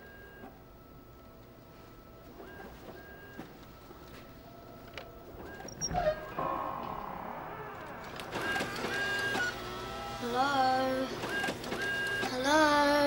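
A photocopier starting up and running, with a sharp click about six seconds in and its noise building after that. Wavering drawn-out pitched tones come in near the end.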